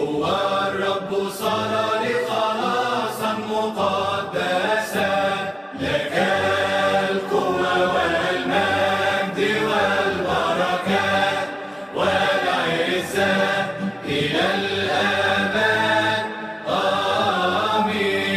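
A group of voices chanting a Coptic liturgical hymn over a low held note. The chant goes in long phrases broken by short pauses about 6 and 12 seconds in, with another brief pause near the end.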